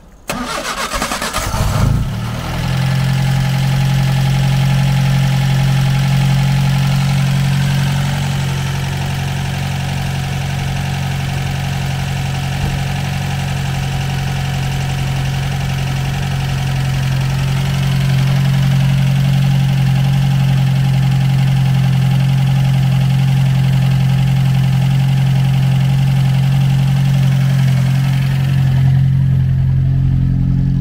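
1953 MG TD Mark II's 1250 cc XPAG four-cylinder engine starting from cold: it bursts into life with a rapid uneven run in the first two seconds, then settles to a steady idle that picks up slightly about halfway through.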